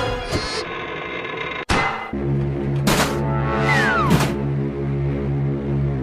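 Cartoon soundtrack music with sound effects. A sharp knock comes just before two seconds in, and a new low, steady music figure starts after it. Two sharp hits land at about three and four seconds, with a sound effect falling steeply in pitch just before the second.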